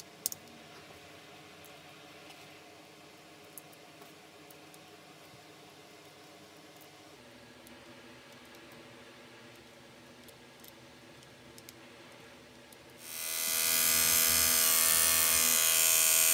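Faint clicks of small screws and a hex key as a trimmer blade is fastened back on. About three seconds from the end, an Andis Slimline Pro hair trimmer switches on and runs with a steady hum, its T-blade freshly sharpened.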